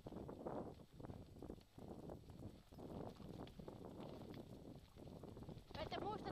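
A dog scooter rolling fast over a dirt forest trail behind two running sled dogs: an uneven rumble of wheels on the ground mixed with quick paw steps. Near the end there is a short pitched call.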